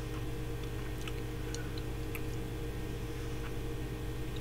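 A few faint, scattered clicks from hands handling a cordless drill's chuck and the small part clamped in it, over a steady low hum.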